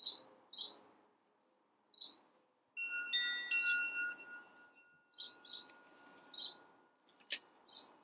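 Wind chimes struck once, several bell-like tones ringing together for a few seconds before fading. Short, high bird chirps repeat through the sound, roughly every half second to second.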